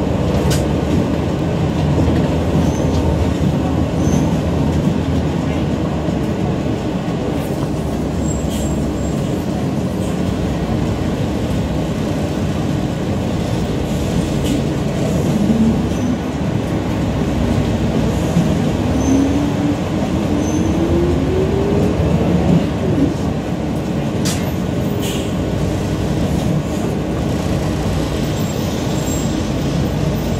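Riding inside a moving city bus: a steady rumble of engine and road noise, with a tone that rises in pitch a little past the middle.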